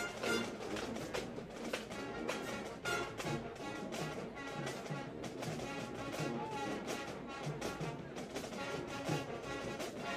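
A marching band playing: brass instruments over a steady, driving drumbeat.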